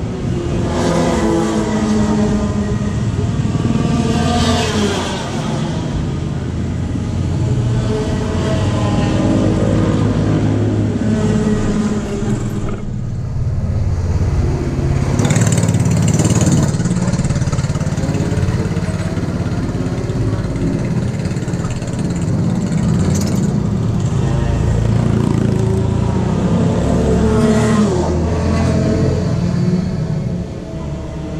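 An engine running steadily, its revs rising and falling repeatedly, with a brief drop in level about halfway through.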